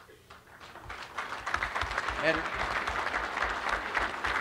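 Audience applauding, starting softly just after a brief hush and building to a steady clapping about a second in, with a short voice calling out near the middle.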